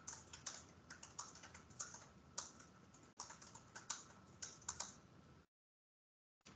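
Faint typing on a computer keyboard: irregular key clicks, several a second, that stop about five and a half seconds in.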